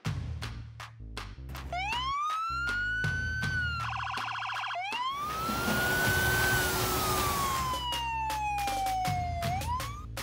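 A police-style siren wailing, its pitch rising and then falling slowly, with a short rapid yelp in the middle and a fresh rise near the end. It sounds over electronic music with a steady beat and bass line.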